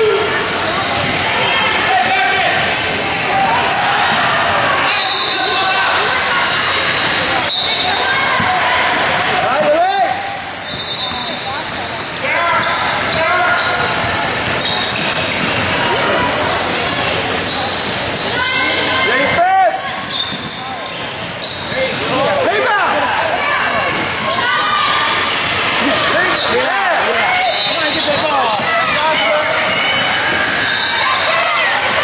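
Basketball game in a gymnasium: a basketball bouncing on the hardwood floor, short squeaks from sneakers, and players and spectators calling out, all echoing in the large hall.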